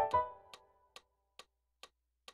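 A chord on a digital piano dies away within the first second. It is followed by short, sharp clicks about twice a second, like a metronome keeping time through a rest.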